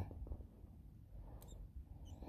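An old fishing rod and reel, dry for want of grease, giving a brief faint squeak a little past halfway as the jig is worked.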